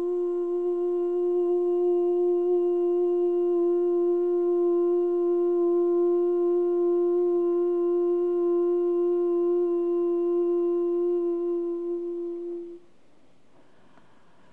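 A woman's voice holding one long, steady sung 'ooh' note at constant pitch, vocal toning for a healing; it fades and stops about 13 seconds in.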